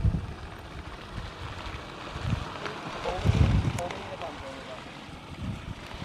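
Wind buffeting the microphone in gusts, the strongest about three seconds in, over faint background chatter of people talking.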